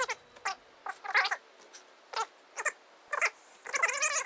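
Film dialogue played back greatly sped up. The voices come out as short, very high-pitched, squeaky chirps, too fast to make out words, and they crowd together near the end.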